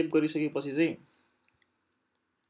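A man's voice speaks briefly, then comes a short run of four or five faint clicks from a laptop keyboard.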